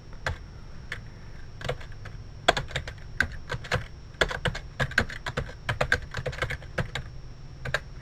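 Typing on a computer keyboard: a few scattered keystrokes, then a quick run of keystrokes from about two and a half seconds in that trails off near the end.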